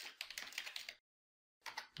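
Typing on a computer keyboard: a quick run of keystrokes for about the first second, then it cuts to dead silence.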